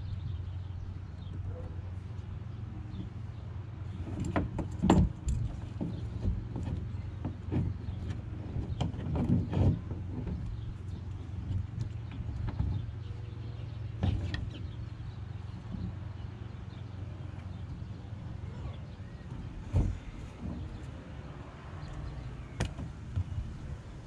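Scattered knocks and clicks of hands handling a kayak seat's straps and fittings against the plastic kayak hull, over a steady low rumble.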